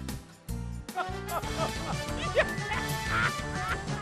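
A cartoon clown's laughing sound effect, replayed as a listening-game clue, over light background music.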